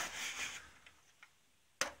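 A hand rubbing over the plastic housing of a Brunton Hydrolyzer, a couple of faint ticks, then a sharp plastic click near the end as the unit's top lid is opened.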